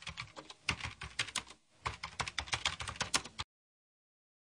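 Typing sound effect: a rapid run of keyboard key clicks, with a brief pause about a second and a half in, stopping a little after three seconds.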